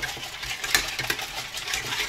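Wire whisk beating hot cocoa in a stainless-steel saucepan, clinking and scraping against the pan's sides and bottom in rapid, irregular ticks. The cocoa is starting to catch and burn on the bottom.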